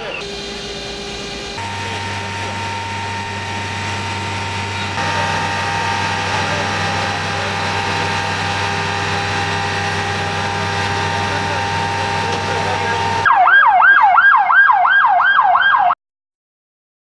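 A steady drone with several held tones. Near the end, an emergency vehicle's siren starts suddenly, loud and fast, its pitch rising and falling about three times a second.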